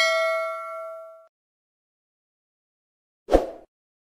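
Subscribe-button animation sound effect: a notification-bell ding ringing out and fading away over about a second, as the bell icon is clicked. About three seconds in, one short thump.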